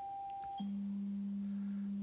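A pure, steady test tone from the ICOM IC-7300 transceiver's speaker: the Siglent signal generator's AM modulation, received in AM mode. About half a second in, it switches from an 800 Hz tone to a very low 200 Hz tone as the modulation frequency is changed.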